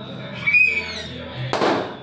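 A balloon bursts with a single loud pop about one and a half seconds in, followed by a brief noisy tail.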